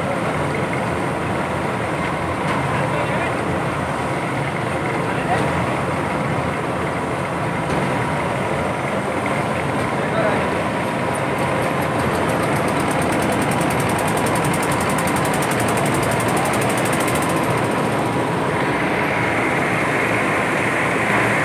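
Air blower of a diesel-fired bitumen tank burner running steadily, with a faint steady whine over its hum. Near the end a brighter rushing hiss sets in as the burner is lit.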